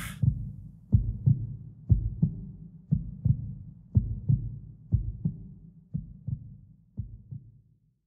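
Heartbeat sound effect: a double low thump, lub-dub, about once a second, slowly fading out to silence near the end.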